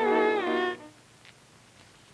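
Soundtrack music: several sustained tones together that slide down in pitch and cut off under a second in.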